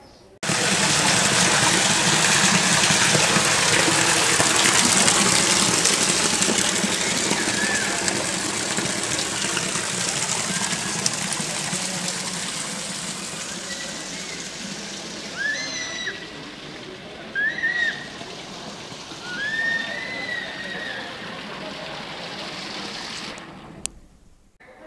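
Water from the spouts of a stone fountain splashing steadily into its basin, loud at first and fading gradually. A few short high-pitched calls come in the second half.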